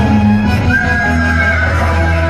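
Background music for a Tamil naattu koothu folk-drama dance, with steady low drone notes under the melody and one high note held for about a second in the middle.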